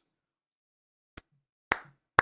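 Near silence, broken by a faint click about a second in and a sharper click near the end.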